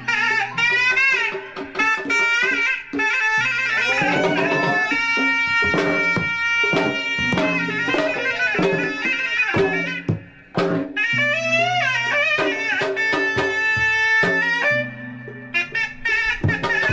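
Traditional pencak silat accompaniment: a reed wind instrument plays a bending, wavering melody over steady hand-drum beats. The music drops away briefly about two-thirds of the way through, then resumes.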